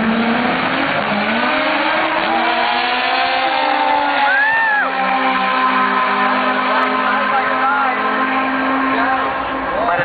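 Race cars accelerating down a drag strip, their engine notes climbing in pitch over the first few seconds and then holding a steady drone, mixed with a voice.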